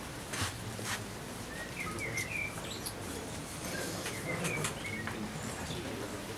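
Small birds chirping in two short runs of quick, sliding notes, with a couple of faint clicks early on over a low background hush.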